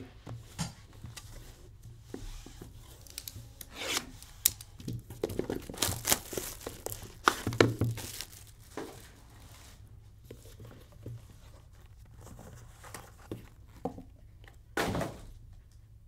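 Hands opening a Panini One trading-card box: irregular rubbing, scraping and crinkling of cardboard and wrapping, busiest in the first half, then the plastic card holder being lifted out.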